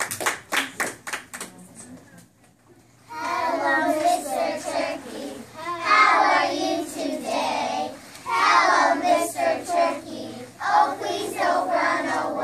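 A quick run of even hand claps, then, after a short pause, a group of young children singing a song together.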